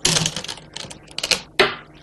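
Go stones clacking on a wooden board and against each other as they are picked up and placed: a quick, uneven run of sharp clicks, the loudest near the start and just past the middle.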